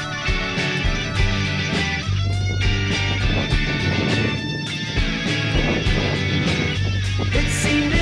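Rock music with guitar, bass and a steady drum beat, laid over the footage.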